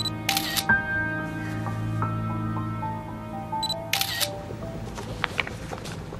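Smartphone camera shutter sound clicking twice, about four seconds apart, as selfies are taken, over soft background music with slow sustained notes.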